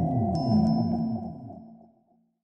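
Electronic intro jingle ending: a repeating pattern of quick falling low sweeps with a few high pinging tones, fading out to silence just before the end.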